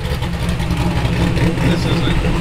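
Low, steady rumble of an idling vehicle engine, with a short laugh near the end.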